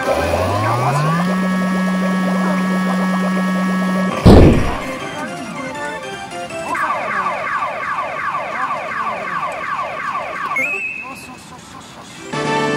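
Pachinko machine (P Great Sea Story 5) reach effects. A stepped rising tone climbs and then holds, and a loud crash comes about four seconds in. Rapid falling swoops follow at about three a second for several seconds, then the sound drops away near the end as the three 6s line up for a jackpot.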